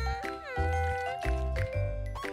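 Children's cartoon background music with a steady pulsing bass beat and sustained melody notes. About half a second in, a pitched sound falls and then holds for roughly half a second.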